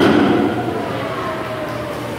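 A dull thump of a climber's bare foot or hand against a wooden climbing-wall panel, loudest at the start and fading within about half a second, over a steady low hum.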